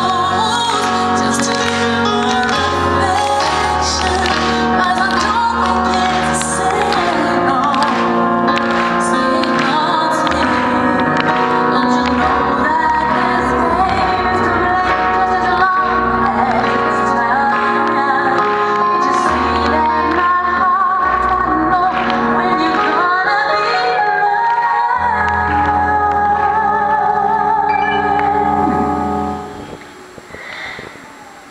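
A woman singing a pop ballad live into a microphone, with keyboard chords and bass carried over a concert sound system in a large hall. The music stops about a second before the end.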